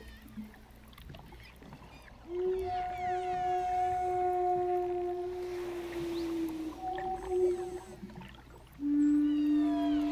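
Wooden Native American-style flute holding long, steady low notes: one beginning about two seconds in, a short higher note around seven seconds, and a lower note near the end. Humpback whale song, with rising and falling cries, is heard faintly in the quieter first two seconds and beneath the flute.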